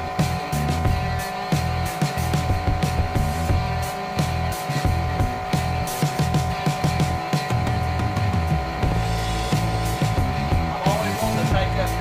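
Music playing over the steady running of an air compressor as it pumps a pneumatic golf ball launcher up toward 120 psi.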